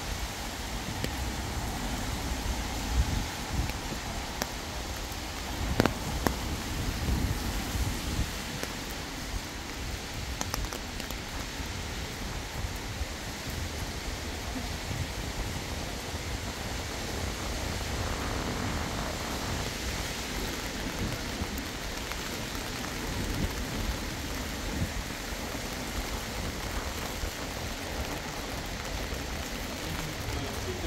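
Rain falling on wet stone paving, a steady hiss, over a low, unsteady rumble, with a couple of sharp clicks.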